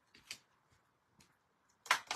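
A few faint light ticks as a hooked plastic pick tool works at the end of a strip of tear tape, then near the end a sharp rasping peel as the tape's liner is pulled off.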